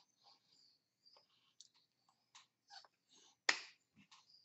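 Hands slapping and tapping against each other and the body while signing, a series of faint irregular clicks with one sharp slap about three and a half seconds in, the loudest.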